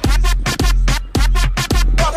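Background music: an electronic track with a heavy bass beat about twice a second.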